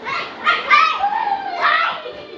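Children shrieking and squealing loudly while playing wildly: several high-pitched cries, the last drawn out with a falling pitch.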